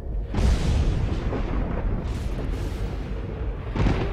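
Cinematic intro sound effects: a deep rumbling boom swells up about a third of a second in and keeps rumbling, with a hissing rush about two seconds in and a sharp crack near the end.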